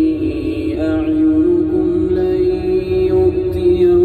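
A male Quran reciter chanting, drawing out one long, slowly wavering held note in a melodic recitation style. A low, steady rumble from the moving car sits underneath.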